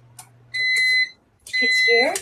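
An electronic alarm beeping: a steady high-pitched tone in half-second beeps, about one a second, starting about half a second in.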